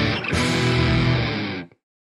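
Electric guitar, a Suhr, playing the last bars of a pop-rock cover over a backing track, with a brief break just after the start. The music stops about a second and a half in, cutting quickly to silence.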